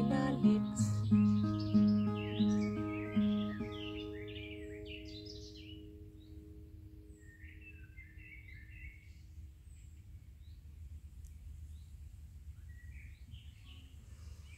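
Acoustic guitar playing the closing notes of a song: a picked note repeated about five times, the last chord ringing out and fading away by about six seconds in. Small birds chirp and twitter through the fade and on afterwards over a low background rumble.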